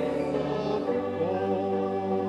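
Gospel choir singing with keyboard accompaniment, holding sustained chords; the harmony and bass shift just under a second in.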